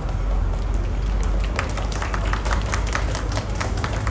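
Scattered hand-clapping from a small audience, irregular claps starting about a second in and lasting a couple of seconds, over a steady low background rumble.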